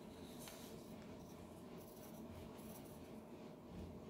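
Faint scratching of a pencil drawing on lined notebook paper, sketching a curved outline in soft strokes.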